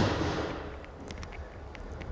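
Low steady hum of room tone with a few faint ticks, after the echo of a voice dies away in the first half second.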